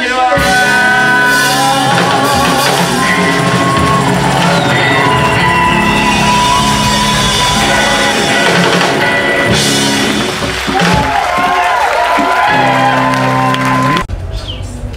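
Live rock band playing amplified electric guitars, with voices singing over held notes.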